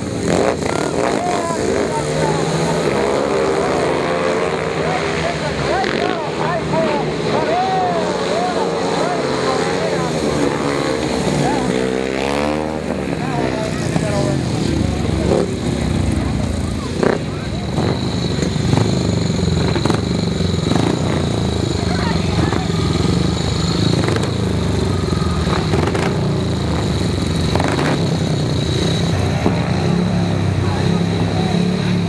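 Speedway motorcycles' single-cylinder engines racing, their pitch rising and falling as the bikes go round for about the first twelve seconds. After that comes a steadier, even engine noise.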